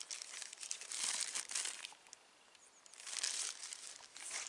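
Wrapping of a sterile field bandage crinkling as it is unwrapped and handled by hand, in two spells with a short pause between.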